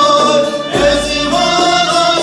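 Live Kurdish folk music: violin and bağlamas (saz) playing a melody, with singing in long held notes.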